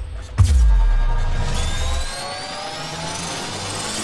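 Cinematic logo-intro sound effects. A deep boom with a falling sweep hits about half a second in and fades out over the next second and a half, then rising tones build toward another hit at the very end.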